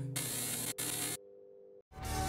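A hiss of static-like noise lasting about a second, with a brief break partway through, over a faint held tone. It belongs to the sponsor logo card's sound effect. It cuts off to near silence, and music starts at the very end.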